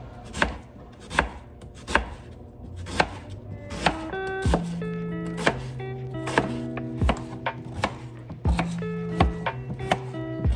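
Kitchen knife cutting onions and a potato on a plastic cutting board: a sharp tap each time the blade strikes the board, about one stroke a second. Background music comes in about halfway through.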